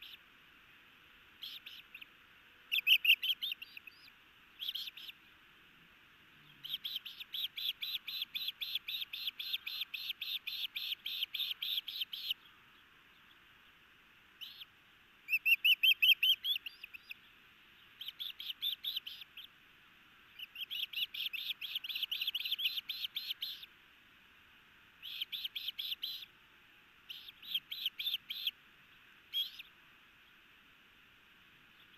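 Ospreys calling at the nest during a feeding: bouts of rapid, high, whistled chirps, some runs lasting several seconds and others only a second or two, with short pauses between them. The loudest bursts come about 3 seconds in and around the middle.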